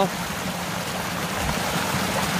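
Small mountain stream cascading over mossy rocks in a low waterfall: a steady rush of splashing water.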